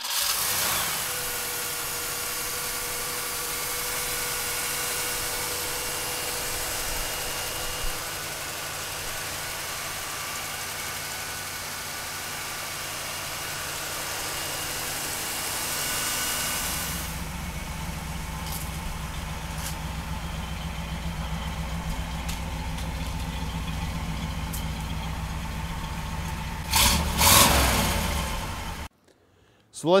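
A 1965 Pontiac GTO's 389 V8 with Tri-Power triple carburettors fires up and runs at a steady idle. About two-thirds of the way through, its note turns deeper and heavier. Near the end it gives a couple of short blips of the throttle before the sound cuts off suddenly.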